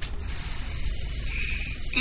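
A steady high hiss that starts suddenly, with a low rumble beneath it: recording noise at a cut between broadcast segments.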